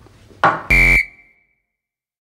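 A sudden hit about half a second in, then a short, harsh buzzer blast lasting about a third of a second that cuts off abruptly, leaving a high tone ringing out briefly.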